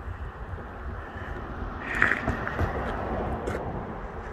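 Wind rumbling on a phone microphone, with a louder rush of noise starting about two seconds in.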